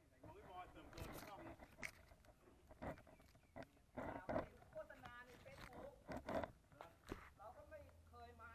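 Faint voices of people talking, broken by several sharp knocks and clicks.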